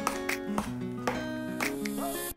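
Background music: plucked acoustic guitar playing a melody of short picked notes.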